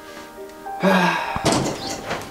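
Quiet background music, then a loud door thud about a second and a half in as a door is pushed open, with a short loud vocal sound just before it.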